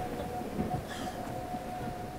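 Film soundtrack ambience: a low rumble dying away, with a faint steady high tone running through it.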